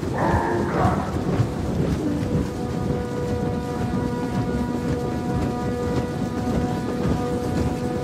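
Massed din of an orc army marching: a dense, thunder-like rumble of many heavy footfalls and clattering armour. From about two and a half seconds in, a held pitched note, like a horn, sounds over it.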